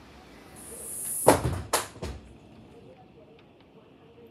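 A door being shut: a hiss builds for about a second, then a loud knock and a second knock half a second later. The background outdoor noise drops once it is closed.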